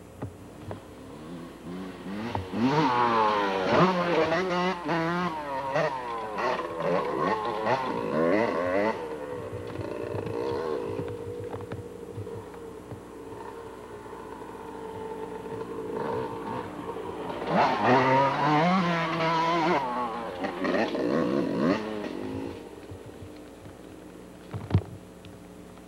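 Yamaha YZ250 two-stroke dirt bike engine revving hard, its pitch swinging up and down quickly as the throttle is worked. It comes in two loud stretches, the first starting about two seconds in and the second in the last third, with a steadier, quieter drone between them.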